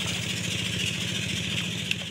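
A small engine running steadily, with a steady high-pitched hiss above it.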